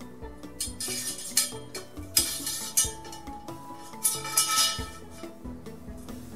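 Steel épée blade lowered into a tall pipe acetone bath, scraping and clinking against the inside of the pipe in several short bursts, over background music.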